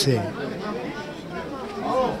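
Background chatter of people in an open-air market, a low murmur of voices, with the tail of a man's word fading out at the very start.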